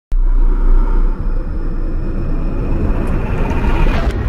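Intro sound effect: a loud, deep rumble that swells and grows brighter over about four seconds, building into a sudden boom at the very end.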